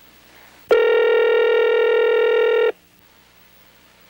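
Cordless telephone ringing once: a loud, steady electronic ring tone about two seconds long that starts and stops abruptly, signalling an incoming call on a line that was said to be dead.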